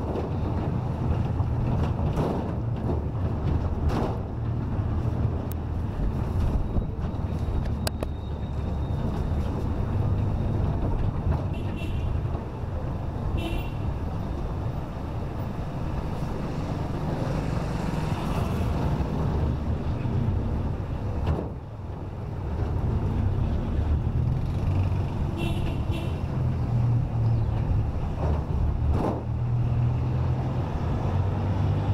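Low, steady engine and tyre rumble from a vehicle driving along a city street in light traffic. Brief high-pitched sounds come a couple of times partway through.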